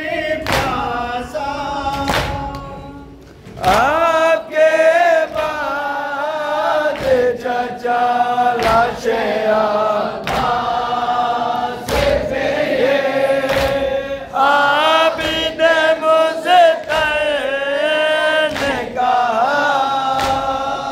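Men chanting a nauha, a Shia mourning lament, unaccompanied: lead reciters at a microphone with a crowd of men singing along. Sharp chest-beating (matam) strikes punctuate it every second or two, and the singing drops away briefly about three seconds in before coming back loud.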